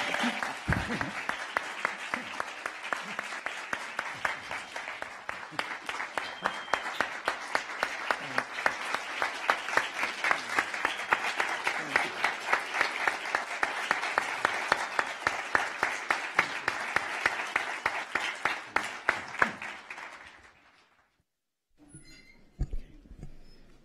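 Audience applauding: many hands clapping, sustained and dense, dying away about two seconds before the end.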